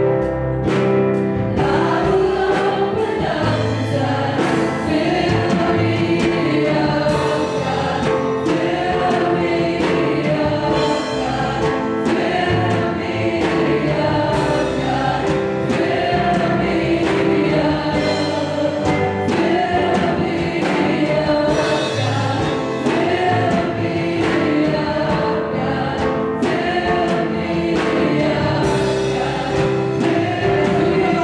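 A small group of singers with microphones singing a gospel worship song together over accompaniment with a steady beat.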